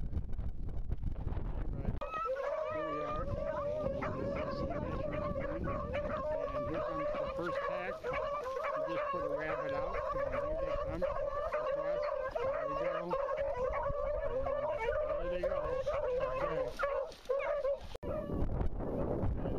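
A pack of beagles baying together in a continuous, overlapping chorus, starting about two seconds in, with a short break near the end. This is the cry field-trial beagles give while running a rabbit's trail.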